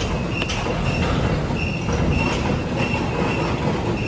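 A large four-point contact ball slewing bearing turning, its outer ring rotating with a steady rumble and a short high squeak that recurs about twice a second.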